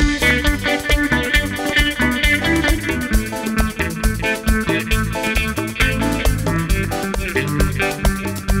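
Live cumbia band playing an instrumental passage: electric guitar over bass guitar, keyboard and percussion, with a steady dance beat.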